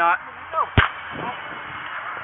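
A single sharp pop about three-quarters of a second in: a police Taser firing its probe cartridge at a man.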